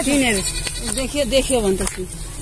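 Speech: a person's voice calling out short, excited words.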